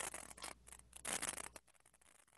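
Faint scratchy rustling and rubbing noises in two short bursts, picked up by an open microphone on a Zoom call. The noises and the line's background hum cut off about one and a half seconds in.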